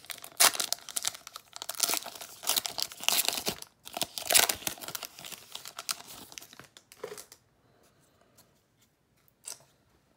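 A Pokémon TCG Ancient Origins booster pack's foil wrapper being torn open and crinkled by hand, crackling in uneven bursts. It stops about seven seconds in, with one brief rustle near the end.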